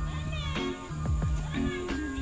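Lo-fi background music with a steady beat, and a cat meowing over it.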